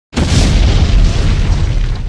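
Explosion sound effect: a loud, deep boom that starts suddenly and rumbles on, slowly easing.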